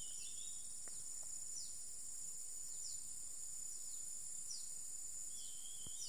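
Steady, high-pitched drone of an insect chorus, with short falling chirps every second or so and a brief warbling call at the start and again near the end.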